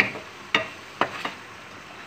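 A wooden spatula stirring chicken pieces in a metal frying pan, with a few sharp scrapes against the pan in the first second and a half over the steady sizzle of the chicken frying in butter.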